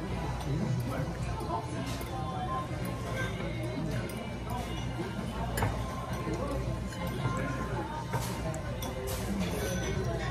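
Background music and voices at a steady level, with scattered light clinks of tableware.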